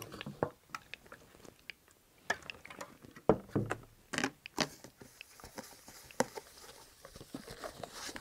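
Irregular light clicks, knocks and paper rustling as a paper towel is wetted with denatured alcohol and rubbed around inside a glass dye bin to clean out old dye. The loudest knocks come about three and four and a half seconds in.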